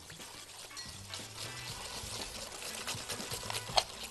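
Wire whisk beating a runny egg-and-sugar batter in a glass bowl while corn oil is poured in, with faint, scattered clinks of the whisk against the glass.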